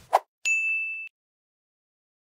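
Outro sound effect on a news channel's end card: a short blip, then a single high bell-like ding about half a second in. The ding holds one steady pitch, fades slightly and cuts off abruptly after about half a second.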